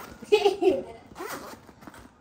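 Zipper on a children's fabric backpack being pulled open, a short raspy run about a second in.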